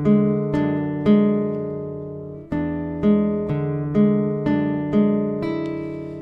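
Nylon-string classical guitar fingerpicking a slow arpeggiated zamba passage: thumb bass notes under plucked treble notes that ring on and fade, about two notes a second. A new phrase starts louder about two and a half seconds in.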